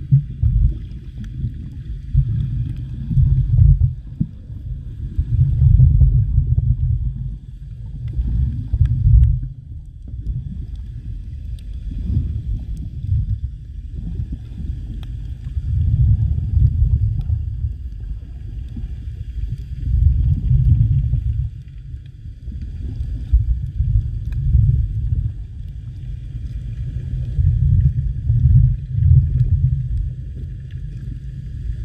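Water noise heard through an underwater camera: a low rumble that swells and fades every two to four seconds as the water surges, with a faint steady high whine behind it.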